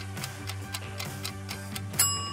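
Background music with a clock-like ticking sound effect, about four ticks a second, marking baking time passing.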